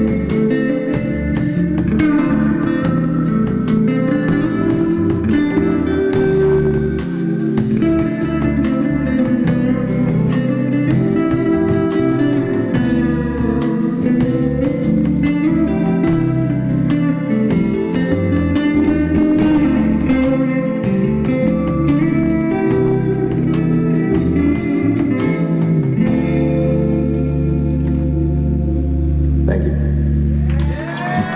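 A live rock band plays an instrumental passage: electric guitar on a Fender Stratocaster, with bass guitar and a drum kit. About 26 seconds in, the cymbals and drums drop out and a low held chord rings on.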